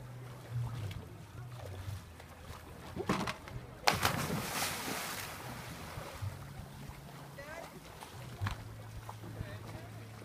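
A person jumping feet-first into deep sea water from a rock ledge makes a big splash about four seconds in, which churns and fades over a second or so.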